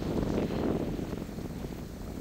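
Wind blowing on the microphone, a steady low rumbling noise that eases slightly toward the end.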